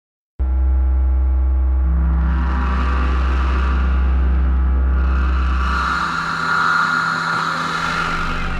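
Electronic music intro from a drum and bass track: it starts suddenly with a deep, steady bass drone under sustained synth tones, while swells of noise rise and fade. The drone drops out near the end, with no drums yet.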